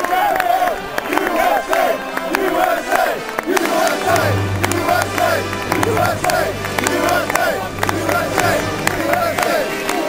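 Many voices singing together in a rhythmic chant, the phrases repeating about every half second. A low steady hum joins in about four seconds in.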